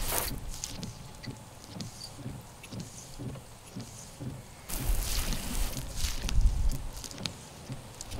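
Michelin silicone windshield wiper blade sweeping across a wet windshield with quite a bit of squeaking; the noise gets louder about halfway through.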